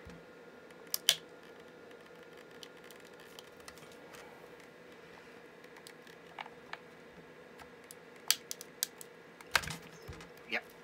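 Flat-head screwdriver prying at the seam of a plastic laptop battery case, giving scattered sharp clicks of plastic and metal: a loud pair about a second in, a few more later, and a quick run of clicks near the end.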